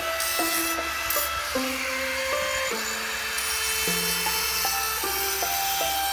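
Background music: a slow melody of held notes that changes pitch every half second or so, over a steady rasping, scraping noise.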